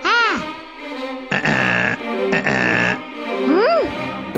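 Cartoon sound effects: a quick up-and-down pitch swoop, then two held buzzy tones, then another rising and falling swoop near the end.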